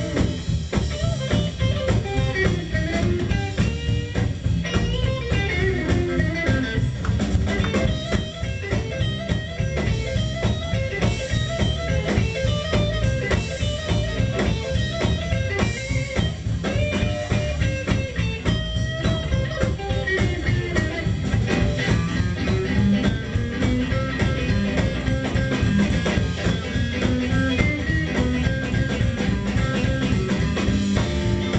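Live blues trio playing an instrumental passage: an electric guitar plays a lead line with bent notes over an upright bass walking and a drum kit keeping a steady beat.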